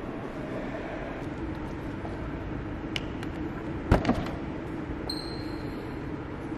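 Steady hum of showroom background noise, with a sharp click about three seconds in and a louder knock about a second later. A thin, steady high tone starts about five seconds in.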